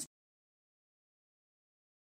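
Silence: the sound track drops out completely at an edit.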